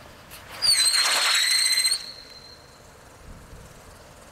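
Firework fountain spraying sparks with a low hiss; about half a second in, a loud shrill whistle starts, dips slightly in pitch, holds steady for just over a second, then cuts off.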